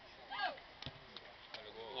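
A quiet football ground during a free kick: a brief distant shout from the pitch a third of a second in, then a couple of faint knocks. Near the end, voices start to rise into cheering as the goal goes in.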